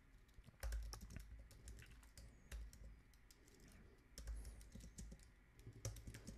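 Faint typing on a computer keyboard: scattered, irregular keystroke clicks as a short command is typed.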